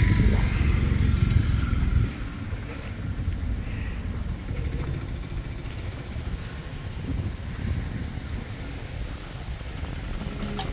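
Wind buffeting the microphone across open paddy fields: an uneven low rumble, strongest for the first two seconds, then lighter.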